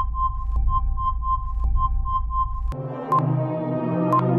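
Quiz background music: a rapid row of short electronic beeps, all at one pitch and about three or four a second, over a low synthesizer drone, marking the countdown's end and the answer reveal. Near three seconds in the beeps stop with a click, and a new ambient synthesizer music bed with held chords begins.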